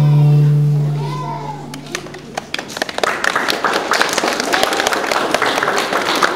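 Piano and double bass end a piece on a held low chord that rings out and fades over about two seconds. Then a small audience of parents and toddlers claps, with young children's voices among the applause.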